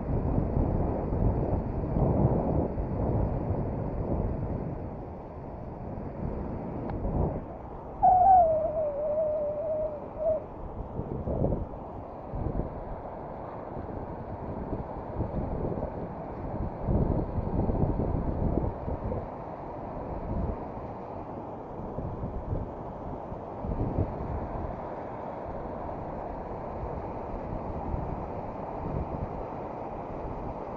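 Wind buffeting the camera microphone over the rush of river rapids, with occasional thumps. About eight seconds in, a single hooting tone falls and then holds for about two seconds.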